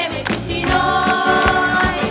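Children's choir singing a pop song over a keyboard backing track with a steady beat, holding one long note from about half a second in.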